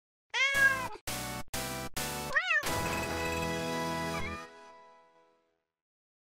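Short logo jingle built around a cat's meow. A meow comes first, then three quick musical hits and a second meow, then a held chord that fades out about five seconds in.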